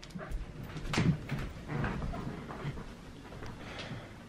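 A dog whining quietly in short spells, with a few light knocks and rustles of movement.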